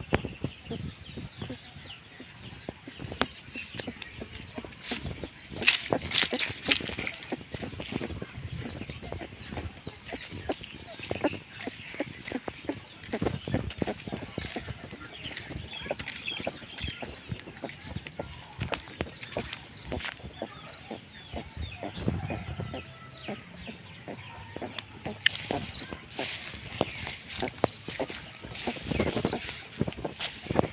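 Footsteps crunching over dry leaves and grass, with short animal calls in between.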